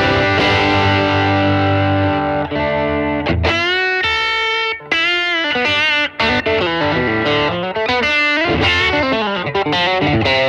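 Fender American Elite Telecaster's bridge Noiseless single-coil pickup, overdriven through a Xotic AC/RC-OD pedal. A held chord rings for about three seconds, then a lead line follows with string bends and vibrato.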